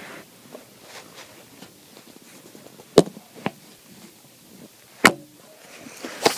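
Handling noise as a handheld camera is moved and set down: two sharp knocks about two seconds apart, with faint rustling between them.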